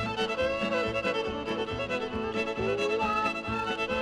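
Instrumental country-style background music with a fiddle melody sliding between notes over a steady beat.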